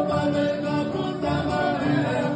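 Live music: a piano accordion playing sustained chords and melody, with an acoustic guitar.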